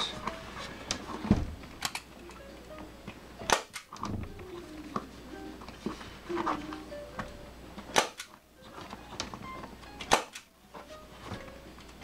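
Hand-operated staple gun firing staples through a vinyl seat cover into a plastic motorcycle seat pan: three sharp snaps, one about a third of the way in and two more near the end, between lighter handling clicks as the cover is pulled tight.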